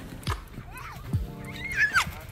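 A child's high-pitched squeals, short shrieks that rise and fall, the loudest near the end, as she is pulled across the snow on a tarp and tumbles off.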